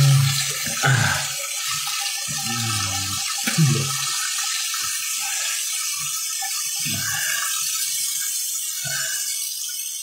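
Water running steadily from a tap into a sink, with a man's short low vocal sounds now and then.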